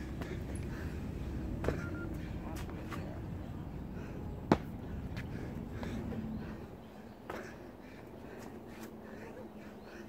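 Sharp knocks and slaps from burpee pull-ups on an outdoor steel pull-up bar: hands striking the bar and the body landing on the pavement. Three distinct hits stand out, the loudest about halfway through, over a low steady rumble that fades in the second half.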